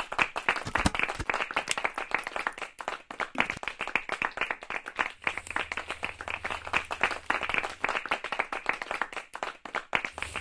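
A group of people clapping their hands, a dense, uneven patter of many claps with no music under it.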